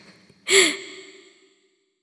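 A single short, breathy vocal sound, like a sigh or exhale, about half a second in, trailing away over about a second.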